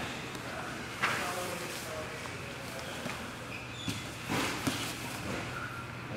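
Two grapplers shifting against each other on a foam wrestling mat: scuffing, clothing rustle and a soft thump about a second in, with a short burst of scuffling a little after the midpoint, over a steady low room hum.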